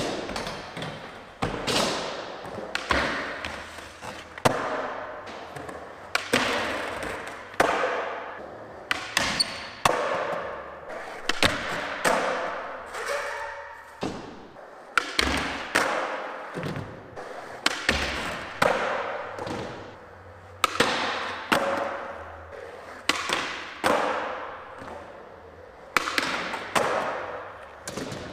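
Skateboard tricks on a concrete floor: a long run of sharp knocks from tail pops, board slides on ledges and rails, and wheel landings, roughly one every second or so, with wheels rolling between. Each knock echoes in a large hall.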